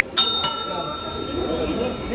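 Bright bell ding, struck twice in quick succession and ringing out for about a second and a half: the notification-bell sound effect of a subscribe-button animation.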